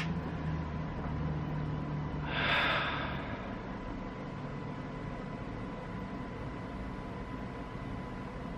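A man letting out a long breath, a sigh of about a second, starting about two seconds in, over a low steady hum.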